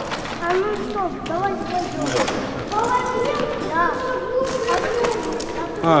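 People's voices without clear words: short sliding calls at first, then drawn-out held tones, over faint footsteps on rubble.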